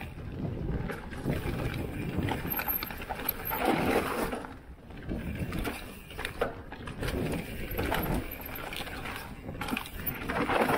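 Mountain bike riding fast down a loose dirt forest trail, heard from an action camera on the rider: knobby tyres rolling over the soil, rattles and clicks from the bike, and rumbling wind on the microphone. The noise swells in uneven surges, loudest about four seconds in and again near eight seconds.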